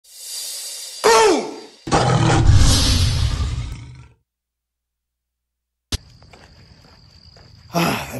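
Logo-intro sound effect: a rising whoosh, then a tiger's roar with a falling growl about a second in, fading out by about four seconds. After two seconds of silence, a click, then faint outdoor background with a steady high tone.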